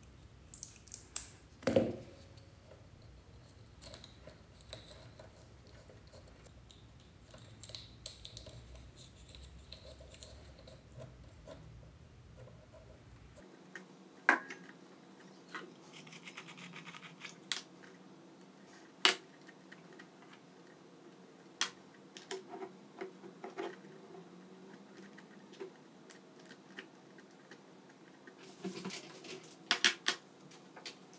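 Quiet handling of small hand tools and parts on a desk: sparse sharp clicks and snips of pliers or cutters working on wire ends, and things being picked up and set down.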